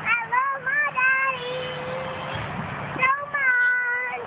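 A young girl singing her own made-up tune in a high voice: a few short sliding notes, then a long held note, then a new phrase about three seconds in. A faint steady low hum runs beneath.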